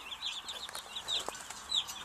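A flock of baby Cornish Cross broiler chicks peeping: many short, high cheeps that fall in pitch, overlapping in a continuous chorus.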